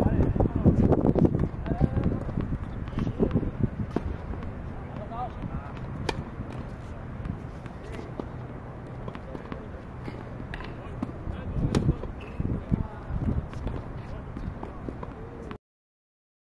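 Tennis serve practice: sharp racket-on-ball hits and ball bounces, the clearest about 6 seconds in and again near 12 seconds, over indistinct voices and wind on the microphone. The sound cuts off abruptly just before the end.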